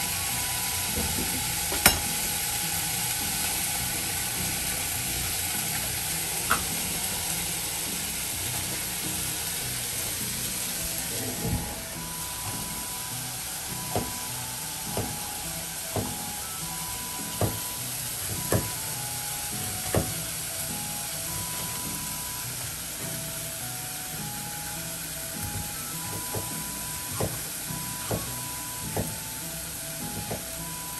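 Food frying in a pan with a steady sizzle, with sharp knocks of a knife on a cutting board, about one a second through the second half, over a light background melody of short notes.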